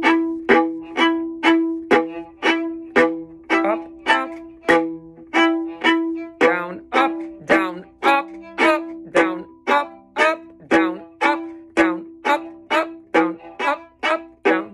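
Viola played with short, separated bow strokes, about two notes a second, in a repeating down-up-up bowing pattern.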